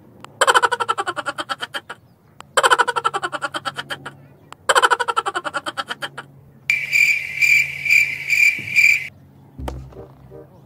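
Comedy sound effects: three separate bursts of fast rattling, each about a second and a half long. Then a high electronic beeping like a digital wristwatch alarm, about two and a half beeps a second for a couple of seconds, and a short click near the end.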